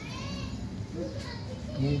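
Background chatter of a family group, adults talking with a child's high voice among them.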